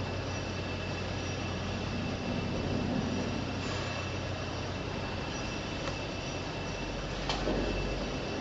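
A steady mechanical hum with a faint high whine over it, and a brief knock about seven seconds in.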